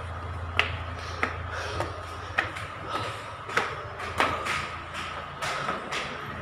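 Footsteps in slippers on hard stair treads, a sharp slap about every 0.6 seconds in an even walking rhythm, over a steady low hum.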